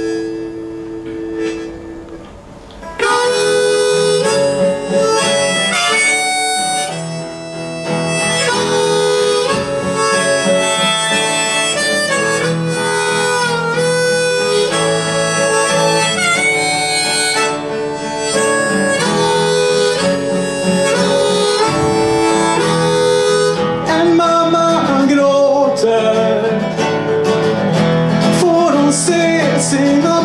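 Harmonica in a neck rack played over strummed acoustic guitar: a held chord for the first few seconds, then from about three seconds in a louder, moving melody line as the instrumental intro of the song.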